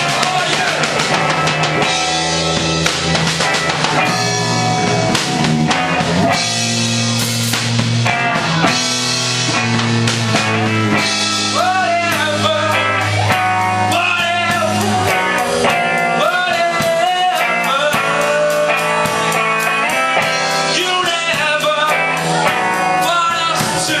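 Live rock band playing a song: a male singer into a handheld microphone over electric guitar, bass guitar and a drum kit. The low bass line thins out about fifteen seconds in.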